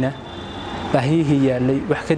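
A man speaking to the camera, pausing briefly in the first second and then talking again from about a second in.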